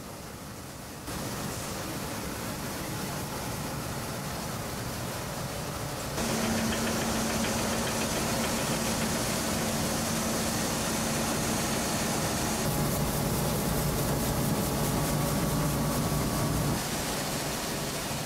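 Rice mill machinery running: a steady mechanical drone of belt-driven pulleys and motors, with a steady low hum. The noise jumps abruptly in level and character several times, louder from about a third of the way in and easing off near the end.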